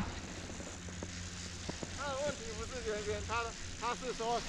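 A faint, high-pitched human voice in short wavering phrases from about two seconds in, over a low steady rumble.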